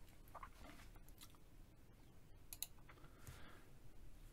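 Near silence with a few faint computer mouse clicks, the plainest about two and a half seconds in.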